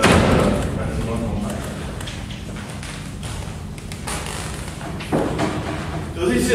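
A sharp thud right at the start, then light chalk tapping and scraping on a blackboard in a large reverberant hall. A man's voice is heard briefly near the start and again near the end.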